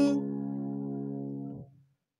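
A man's unaccompanied singing voice holds one long note. The note suddenly softens and loses its brightness at the start, then fades away to silence a little before the end.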